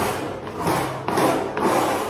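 Hand trowel scraping across a freshly applied cement-sand mortar patch on a wall, smoothing it in repeated strokes about two a second.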